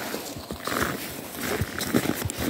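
Footsteps crunching on packed snow, several steps at a steady walking pace.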